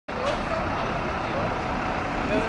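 An articulated city bus driving slowly past with a steady low engine and road rumble, amid the general noise of a busy city street and faint voices of passers-by.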